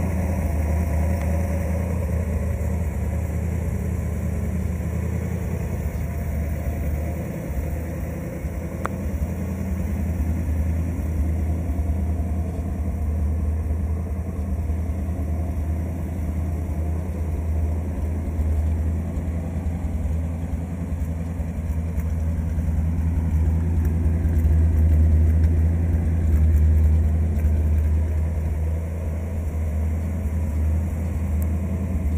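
1955 Ford Thunderbird's 292 cubic-inch Y-block V8 idling steadily. It grows a little louder for a few seconds late on.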